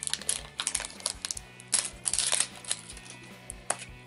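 Clear plastic wrapper crinkling and crackling in irregular bursts as it is torn and peeled off a plastic candy egg, over background music.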